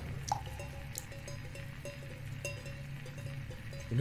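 Quiet horror-film soundtrack: a steady low drone under a few sharp, drip-like ticks and faint short repeated notes.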